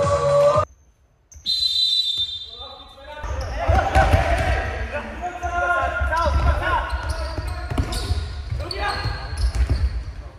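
Intro music cuts off and, after a brief gap, a short whistle blast sounds. Then comes indoor futsal play echoing in a large sports hall: players calling out, and the ball thudding off feet and the floor.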